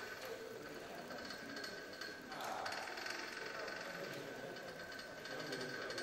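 Small electric motors of a pole-climbing robot running as it climbs a wooden pole, a steady high whine, over the background chatter of a crowded hall.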